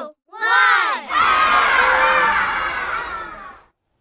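A single high child's call, then a group of children cheering and shouting together, fading out shortly before the end.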